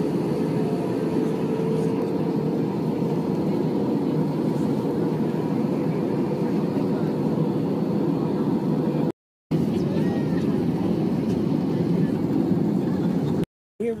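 Jet airliner cabin noise in flight: a steady rushing drone of engines and airflow. It breaks off briefly twice, about nine seconds in and just before the end.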